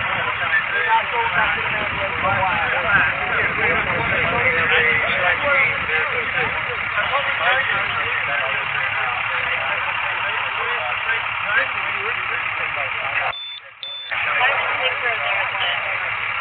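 Several people talking over one another, a steady chatter of overlapping voices with a low rumble underneath. Near the end the sound cuts out for about half a second.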